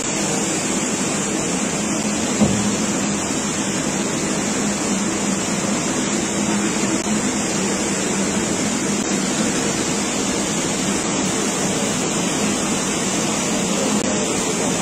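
Fast, turbulent river water rushing steadily: floodwater let out through the opened Mullaperiyar dam's spillway.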